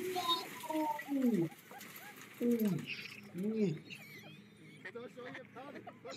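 A voice making a few drawn-out exclamations, some rising and falling in pitch, with a faint hiss between them.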